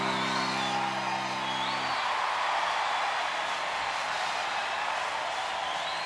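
The karaoke backing track's final held chord stops about two seconds in, leaving a small group cheering and whooping, with a few high rising-and-falling whoops.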